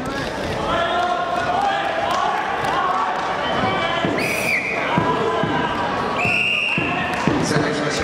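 Wrestling hall ambience: many voices talking at once, scattered thuds on the mats, and two short shrill referee whistle blasts about four and six seconds in.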